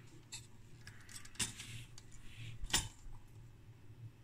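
A circuit board being handled and turned over by hand: faint rubbing with two light clicks, about a second and a half in and a louder one near three seconds, over a low steady hum.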